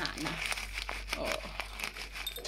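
A plastic snack bag crinkling as it is tipped to pour a seed-and-treat mix into a food bowl, with irregular small crackles.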